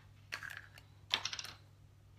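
Two short runs of light clicks and rattles, one about a third of a second in and another just after a second, as a makeup brush and cosmetic products are handled.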